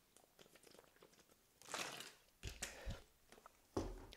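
Quiet sounds of a man drinking from a thin plastic water bottle. After a near-silent second and a half come a few faint swallows and soft crinkles of the plastic, then a soft thump near the end.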